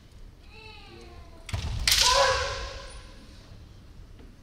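Kendo kiai: a short falling yell about half a second in, then a loud thump and a long, loud shout about two seconds in that fades over a second, ringing in the hall.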